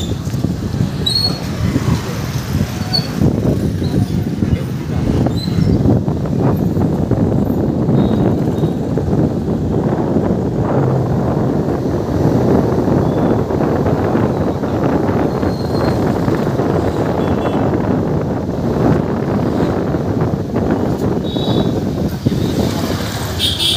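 Steady low rumble of motorcycle traffic and road noise, mixed with wind buffeting the microphone while moving along a busy street.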